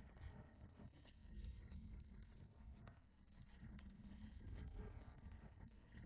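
Near silence, with faint scratching and rustling of a hand handling items in a car trunk's side compartment.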